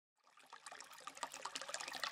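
Faint trickling water fading in, a quick patter of small drips and ticks growing louder.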